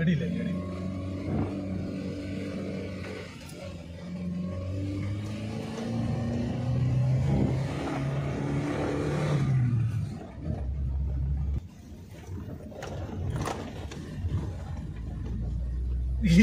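Car engine running, heard from inside the cabin, its pitch climbing and falling with the throttle, with voices over it.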